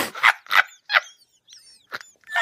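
A young woman laughing hard in loud, breathy bursts, four in quick succession, then fading to a softer one near the end.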